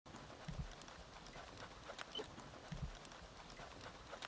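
Faint sounds of soldiers moving and handling gear on gravel: two soft, low double thuds, a few light clicks, and a quiet outdoor background.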